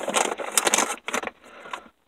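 Small sway bar bushings being handled and knocked together with their packaging: a quick run of short rustles and clicks that stops near the end.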